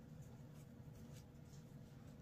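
Near silence: faint room hum with a few soft rustles of braided rope being pulled snug by hand.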